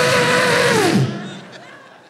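A man's loud, raspy vocal sound effect blown into a handheld microphone: one held note that drops in pitch and dies away about a second in.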